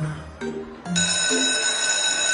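Background music with short low notes, then about a second in a school bell starts a steady, high ring that carries on, calling students to class.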